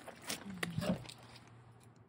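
A short low grunt from a person about half a second in, among a few light knocks and rustles of a cardboard box and its plastic wrapping being handled as a trailer wheel is lifted out.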